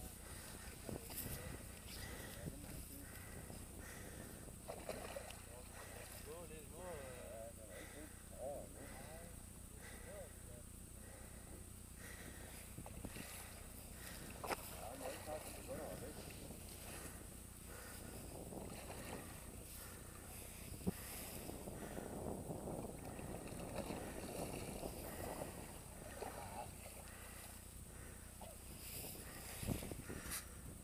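Faint, low murmured voices over quiet open-air background noise, with a few soft clicks or knocks.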